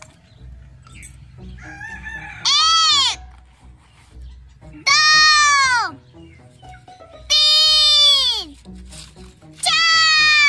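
Four loud, high-pitched calls, each falling in pitch and lasting about a second, roughly two and a half seconds apart, over faint background music.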